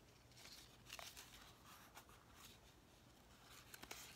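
Near silence: quiet room tone with faint rustling of a picture book's paper pages, then a few short, soft paper clicks near the end as a page is turned.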